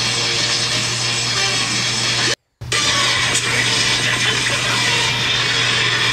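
Anime battle sound effects: a dense, noisy rush of energy attacks and a powering-up aura, with a steady low hum under it. A sudden gap of total silence cuts in about two and a half seconds in.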